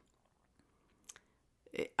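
Near silence in a pause between speech, broken by two faint mouth clicks about a second in and a short breath just before speaking resumes.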